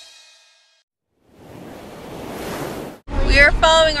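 Rock music with guitar fading out, a moment of silence, then a rushing noise that swells and cuts off suddenly, after which a woman starts speaking.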